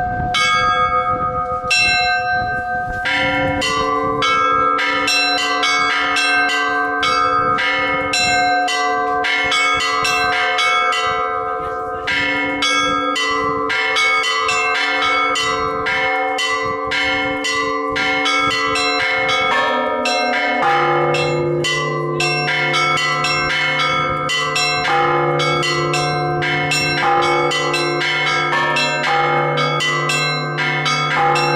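Russian Orthodox church bells rung by hand from ropes: a row of small bells struck rapidly in a continuous ringing pattern. A lower bell joins about three seconds in, and a deep bell joins about two-thirds of the way through and keeps sounding under the small bells.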